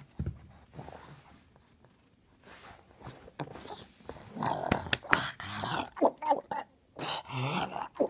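Pug growling and grunting in rough play with a person's hand, mostly from about four seconds in, with a few sharp knocks among the growls.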